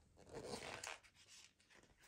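A page of a hardcover picture book being turned by hand: a faint papery rustle and slide, mostly in the first second.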